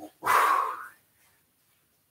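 A man blowing out one short, forceful breath, about half a second long, as he crunches up into a twisting abdominal exercise.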